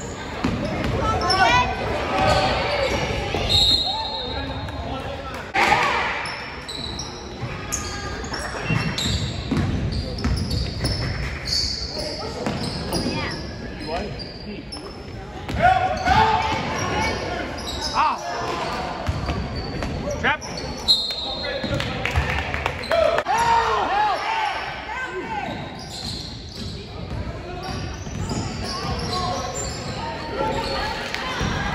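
Basketball game in a gym: a ball bouncing amid the voices and shouts of players and crowd, echoing in the large hall.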